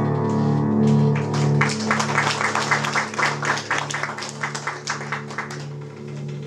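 An upright piano's last chord rings out and fades, then an audience applauds in quick, uneven claps from about two seconds in until shortly before the end.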